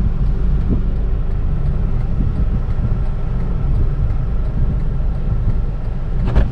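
Steady low rumble of a car engine idling, heard from inside the cabin.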